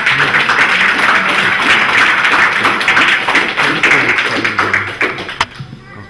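Audience applauding, a dense patter of many hands that dies away about five seconds in.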